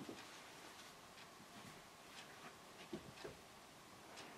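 Near silence with faint, irregular small clicks and rustles of fingers working thin wire around a tiny deadeye, a couple of slightly louder clicks about three seconds in.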